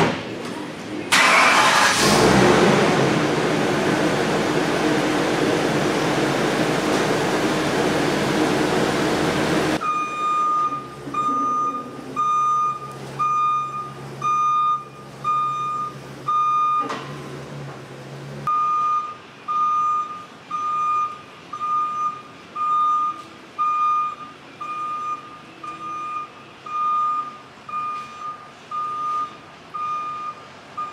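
Ambulance's reversing alarm beeping evenly, about one and a half times a second, over a low engine idle as the vehicle backs up; the beeping breaks off briefly partway and then resumes. Before it, a loud steady rushing noise fills the first ten seconds and cuts off abruptly as the beeping begins.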